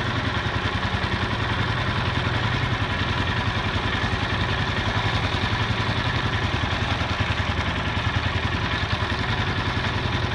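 Small Craftsman engine on a go-devil long-tail mud motor running steadily at idle, driving the propeller as the boat moves along.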